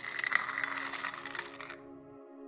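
A gritty scraping sound effect of metal dragged against stone. It is loudest early on and fades out near the end, over a low, sustained ambient music drone.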